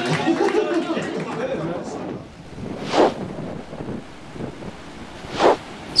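Voices in a crowded bar for about two seconds. Then a steady rush of wind and surf on a stormy beach, with two short, loud whooshes: one about three seconds in and one near the end.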